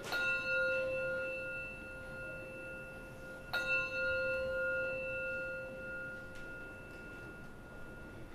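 A bell struck twice, about three and a half seconds apart, each stroke ringing on in several steady tones that slowly fade. It is rung at the elevation of the communion cup after the words of institution.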